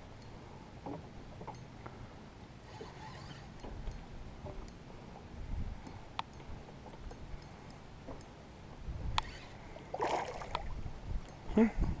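Wind rumbling on the microphone over the light slap of lake water against a small boat's hull, with a few faint clicks and brief rushes of water noise about three and ten seconds in.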